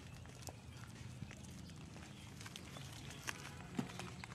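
Faint, scattered crunches and rustles from handling soil-filled plastic nursery polybags during oil palm seedling transplanting, over a low steady hum.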